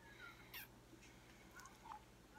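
Near silence, with faint snips of scissors cutting paper: one short click about a quarter of the way in and another near the end, among faint high chirps.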